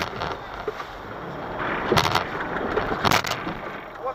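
Vehicle engines running under load as a Toyota Land Cruiser Prado is towed out of deep snow, with steady noise that grows louder about halfway through and a couple of sharp knocks about two and three seconds in.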